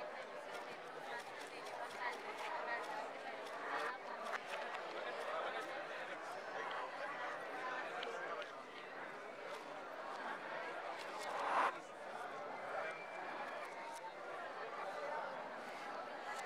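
Indistinct chatter of many overlapping voices in a crowded room, with scattered small clicks throughout and one brief louder burst about eleven and a half seconds in.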